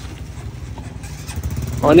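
A vehicle engine running, a steady low rumble, with a man's voice starting near the end.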